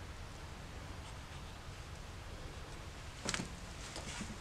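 Quiet room tone with a low steady hum and faint scratching of a wax oil pastel on paper, with one brief faint tap about three seconds in.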